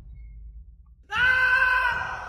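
A scream sound effect: one long, high-pitched scream that starts suddenly about a second in and holds steady.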